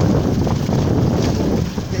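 Wind buffeting the microphone over the steady rumble of a moving motorcycle riding on a brick-paved road.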